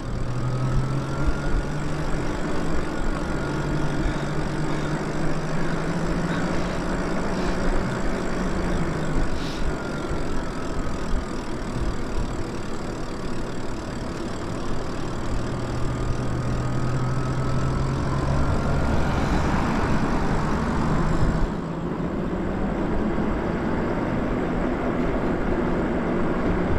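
Lyric Graffiti e-bike's electric motor whining under way, its pitch slowly rising and falling with speed, over a steady hum and rush of tyre and wind noise.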